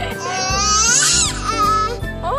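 A toddler crying: one drawn-out wail that rises and then falls in pitch, over background music.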